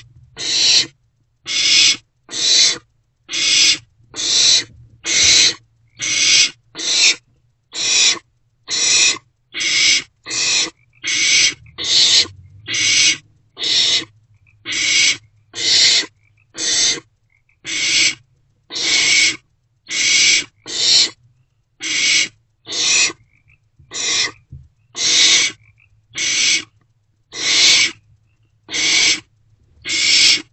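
Barn owl owlets giving their rasping hiss, or 'snore', in a steady series of short hisses just over once a second: the food-begging call of nestling barn owls.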